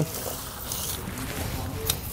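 Konig CG9 steel square-link snow chain faintly dragging and clinking on a concrete floor as it is slid behind a car tire, with one sharp click near the end.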